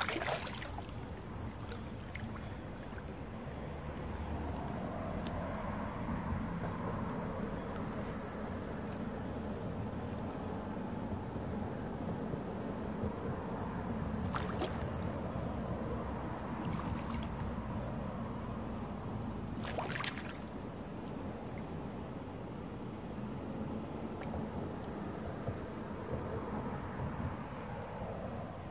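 A large hooked carp splashing at the water's surface as it is played in to the bank: a sharp splash right at the start and a few more in the middle, over a steady wash of wind and water noise.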